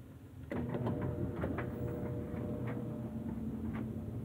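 Electric clothes dryer starting about half a second in, its motor and drum then running with a steady hum, with scattered clicks over it.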